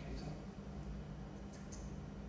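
Room tone of a lecture hall: a low steady hum, with a couple of faint clicks near the end.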